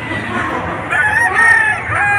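A gamecock crowing once, a call of about a second starting near the middle, over the chatter of a crowd.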